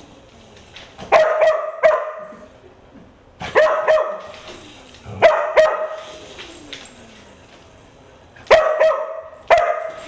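A dog barking at a small remote-control helicopter, sharp barks coming in four pairs with short pauses between them.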